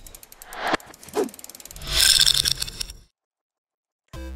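Sound effects for an animated logo intro: rapid mechanical clicking with short whooshing sweeps, building to a loud swell about two seconds in, then cutting off suddenly about a second later.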